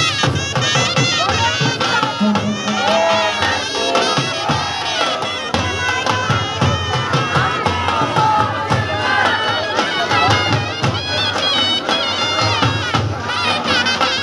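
Festive folk music with steady drum beats and a reedy, piping wind melody, mixed with a crowd's shouts and cheers.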